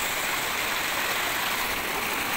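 Steady rush of water from a rocky stream and waterfall.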